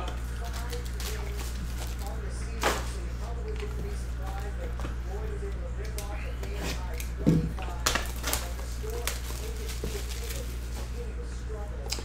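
Small cardboard trading-card boxes being handled and opened: a few short sharp taps and tears, about five, spread through the middle, over a steady low hum and faint background talk.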